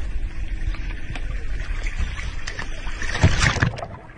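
A sea turtle splashes into the sea as it is let go over a boat's side, the splash coming about three seconds in, over a steady low rumble.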